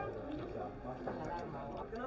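Faint background voices of people talking in a bar, with a low steady room hum.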